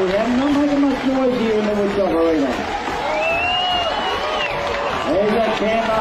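Men's voices shouting long, drawn-out calls over crowd noise, with a high rising-and-falling call partway through.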